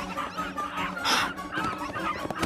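A few short, high yaps and yips from small animated puppies.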